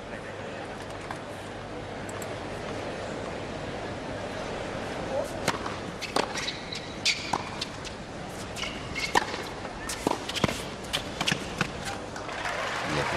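Tennis rally on a hard court: rackets strike the ball and it bounces in a run of sharp cracks starting about five seconds in, over the low murmur of a stadium crowd.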